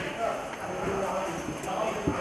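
Crowd of people talking, with hard-soled footsteps clacking on a stone floor.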